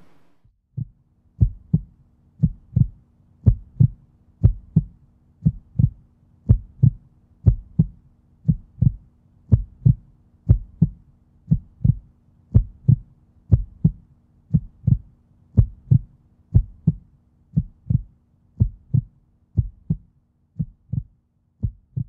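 A heartbeat: low lub-dub thumps in close pairs at a slow, steady pace of about one beat a second, over a faint steady hum. The beats grow a little fainter near the end.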